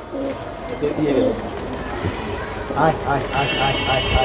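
Domestic teddy pigeons cooing in a wire cage, low rolling coos, mixed with a man's voice speaking briefly. A thin steady high tone comes in near the end.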